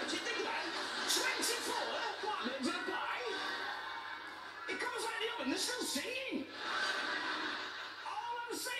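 People laughing and chuckling, with indistinct talk mixed in, played through a television speaker.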